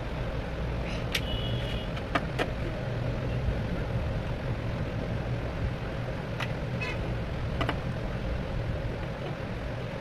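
A few sharp plastic clicks and taps, spread out, as the parts of a plastic toy house kit are handled and fitted together. A steady low rumble runs underneath.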